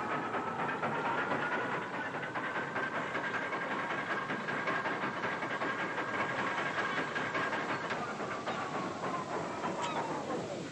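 Dockside crane machinery running with a dense rattling clatter. A single whine climbs over the first couple of seconds, holds steady, then starts to fall away near the end as the crane swings its load.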